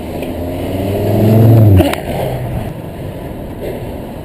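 A passing car's engine: a hum that builds to its loudest about a second and a half in, then breaks off. It sits over steady wind rush on the microphone from the moving bicycle.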